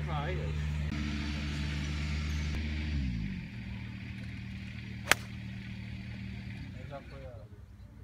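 A golf driver striking a ball off the tee: one sharp crack about five seconds in, the loudest sound here. Under it runs a steady low hum that drops in pitch about three seconds in and dies away near the end.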